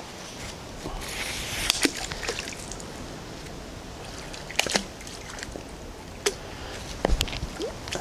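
Shallow creek water running steadily, with a splash about a second in as a large neodymium magnet on a rope is dropped into it, and a few short sharp knocks.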